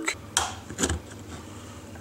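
Two sharp plastic clicks, about half a second apart, as a small pick and screwdriver pry apart the glued plastic housing of a Dodge Nitro transfer-case shift actuator.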